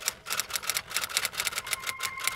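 Typewriter keys clacking in a rapid, even run of about seven or eight strokes a second, with a faint steady synth tone underneath.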